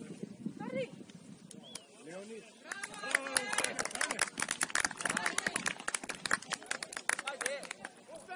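Players' voices calling out on an open football pitch, a few single shouts at first. From about three seconds in, many voices shout over one another at once, mixed with a rapid clatter of sharp clicks.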